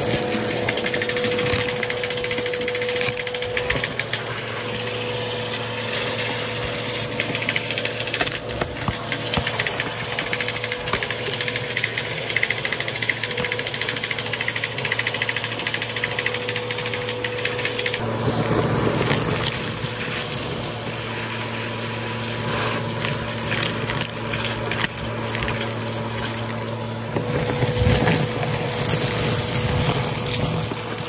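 Vacuum cleaner running steadily as its hose and bristle brush tool suck up crunchy debris from carpet, with constant crackling and rattling of bits drawn into the hose. The motor's tone shifts about eighteen seconds in.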